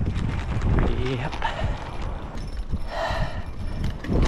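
Mountain bike rolling along a dirt fire road: uneven low rumble of wind on the action-camera microphone, with irregular knocks and rattles from the tyres and bike over the rough dirt, and a short hiss about three seconds in.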